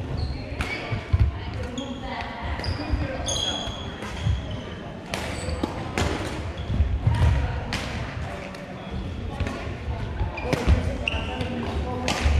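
Badminton play in a large gym: sharp cracks of rackets striking shuttlecocks and short high squeaks of sneakers on the hardwood floor, over footfalls, with the hall echoing. Voices chatter throughout.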